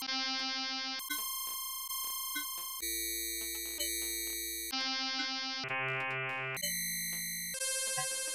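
Max 8 modular synthesizer patch playing a stepped sequence of electronic tones, jumping to a new random pitch every one to two seconds. Each tone is re-struck about once a second with a sharp attack and slow decay.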